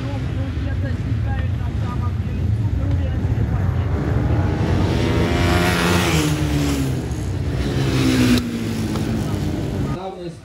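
Ice speedway motorcycles racing at high revs. From about five seconds in, one bike passes close and its engine note falls in pitch; the sound changes abruptly a little before the end.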